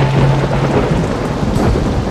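Heavy rain pouring down, with thunder in the low end.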